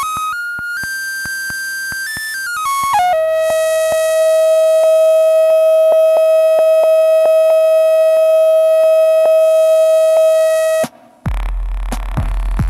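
Electronic tones from a Korg Volca Sample: a few sustained pitches stepping up and down, then one long held tone with a faint, regular clicking under it. Near the end the tone cuts off suddenly and a loud, deep bass drone with crackle takes over.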